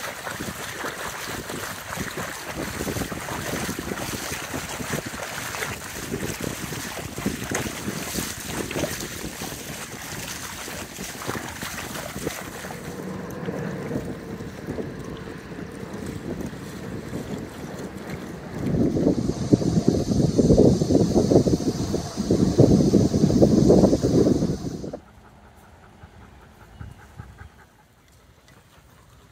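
Several dogs wading and splashing through shallow water, with wind on the microphone; a louder stretch of water and wind noise lasts several seconds in the second half, then the sound drops off sharply near the end.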